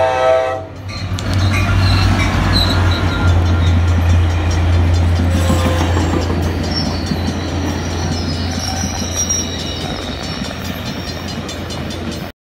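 An ACE commuter train led by diesel locomotive 3105 passing at a grade crossing. The horn chord cuts off about half a second in, then the locomotive's engine hum and the rolling rumble of the double-deck coaches over the rails carry on steadily. A faint high wheel squeal comes in the second half.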